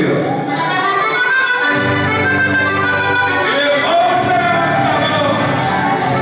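Live gaúcho band opening a lively quarteada, the piano accordion leading the melody over acoustic guitar strumming. The bass and full rhythm come in about two seconds in.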